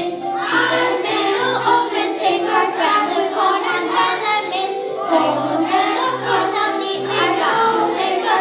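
Children singing a song over musical accompaniment, with a regular low bass note pulsing under the voices.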